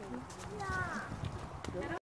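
Indistinct voices of people talking, with a few sharp clicks.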